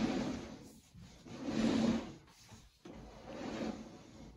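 Sewer inspection camera's push cable being fed into the line in strokes, rubbing and sliding: three swells of scraping noise about a second and a half apart, the middle one the loudest.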